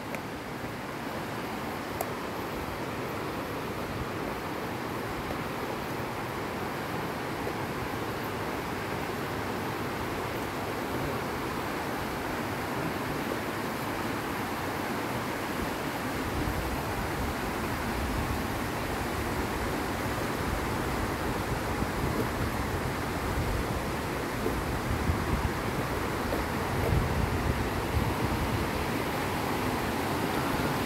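Steady rushing outdoor noise, slowly growing louder, with low, uneven wind rumble on the microphone from about halfway through.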